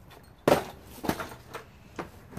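Things being handled in a plastic storage tote: a sharp knock about half a second in, then softer knocks and rustling as a cardboard game box is taken hold of.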